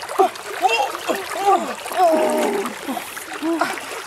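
Splashing in shallow river water, with a string of short rising-and-falling vocal calls and one longer, wavering call about two seconds in.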